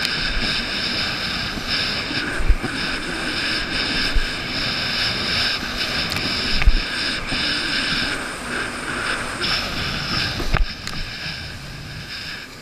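Jet ski running at speed over choppy sea: steady engine and rushing-water noise, with a few short thumps as the hull hits the waves.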